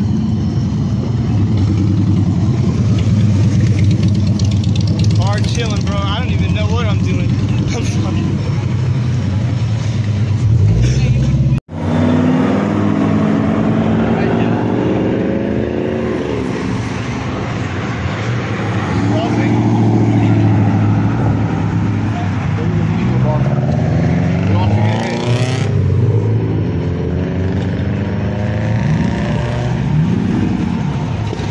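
Car engines and exhausts running and revving as vehicles drive past, with exhaust notes that rise and fall over a steady low engine drone. The sound cuts out for an instant about twelve seconds in.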